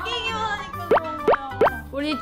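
Playful edited-in background music with three quick rising "plop" sound effects in a row, about a second in and a little over a third of a second apart.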